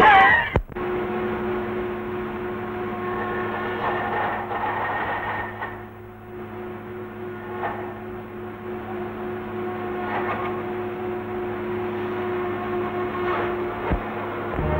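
A short loud voice at the very start, then a steady drone of sawmill machinery with a few faint knocks of wood-working scattered through it.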